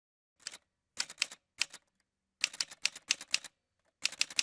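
Typewriter keystrokes: a few scattered key strikes, then a quicker run of about eight strikes a little over halfway through.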